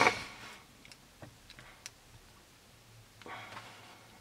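Faint metal-on-metal clicks and ticks as a steel cotter pin is worked through a valve stem on a radiator cap and its legs bent over. There is a brief scrape at the start and a soft rustle of handling about three seconds in.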